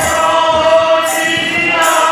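A group of voices singing a devotional chant together, with held, gliding notes, over accompanying music. A metallic jingling stroke comes in near the end.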